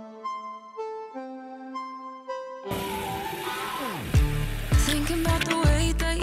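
Background music: a soft, reedy melody of single held notes, then about three seconds in a falling sweep leads into a full pop beat with heavy bass.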